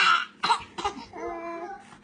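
Babies' vocal sounds: three short, sharp breathy bursts in the first second, then a longer whining note.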